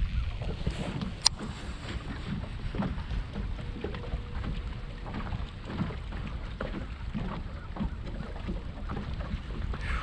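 Wind buffeting the microphone on an open boat, a steady low rumble. One sharp click comes a little over a second in, as the baitcasting rod is cast.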